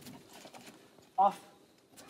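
A dog's paws and claws stepping on and jumping off a raised mesh cot bed onto a wooden deck: faint, scattered taps and scuffs.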